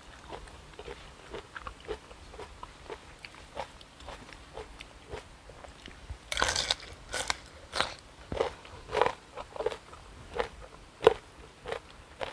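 Close-miked eating: soft chewing, then a loud crisp bite into raw bitter gourd about halfway through, followed by a run of sharp crunches as it is chewed.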